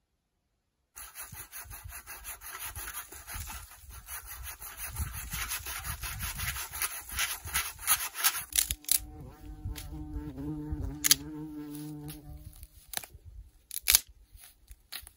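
A hand saw cutting through a branch in quick rasping strokes. Then a branch is bent until it creaks in a wavering tone, and dry wood snaps in several sharp cracks, the loudest near the end as a dead branch is broken.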